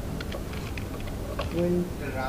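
Computer keyboard typing: a handful of quick, separate keystrokes over the first second and a half, as a short CSS value is typed in.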